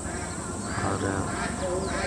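A bird calling a couple of times during a short lull, with a man saying a single word.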